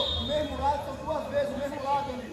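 Indistinct voices of several people talking and calling out across a football training session.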